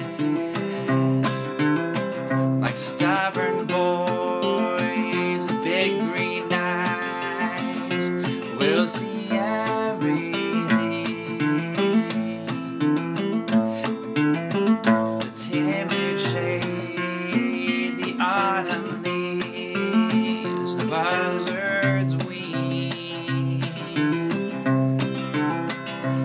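Acoustic guitar strummed in a steady rhythm, chords ringing through an instrumental passage of a slow folk song.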